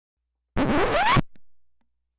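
A short scratching sound effect laid over an edit: one burst of about two-thirds of a second sweeping upward in pitch, ending abruptly and leaving a faint, fading tail.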